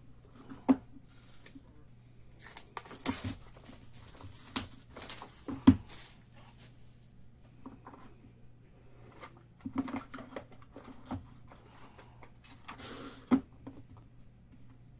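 A 2018-19 Noir basketball card box being opened by hand: packaging rustling and tearing in several spells, with a few sharp knocks and taps as the box is handled on the table.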